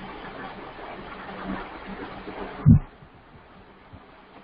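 Steady microphone hiss with a faint electrical hum, broken about two-thirds of the way through by a single short, low thump; the hiss drops right after it.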